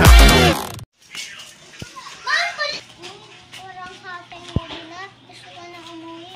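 Loud hip-hop music with a heavy beat cuts off suddenly under a second in. Young children then talk and call out to each other, with one brief knock partway through.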